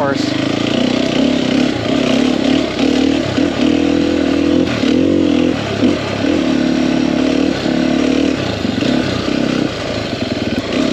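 2021 Sherco 300 SEF single-cylinder four-stroke dirt bike engine running under a rider at trail speed, its pitch dipping and rising several times in the middle as the throttle is rolled off and on, then holding steadier.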